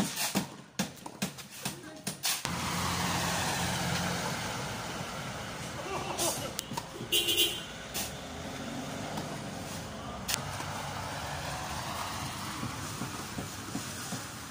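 Sharp knocks and tennis ball hits in the first couple of seconds. Then a large motor vehicle's engine rumble sets in suddenly and slowly fades, with brief voices and a short high-pitched sound in the middle and a single ball hit later on.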